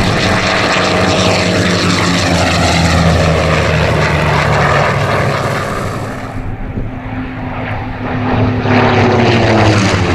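F4U-4 Corsair's 18-cylinder Pratt & Whitney R-2800 radial engine and propeller running at high power in flight, a loud, deep drone. It fades for a couple of seconds past the middle, then swells as the plane passes close, with the pitch dropping as it goes by near the end.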